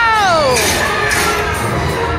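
A high voice gives one long cry that falls steeply in pitch in the first half-second, over the loud soundtrack and noisy effects of an indoor dark ride.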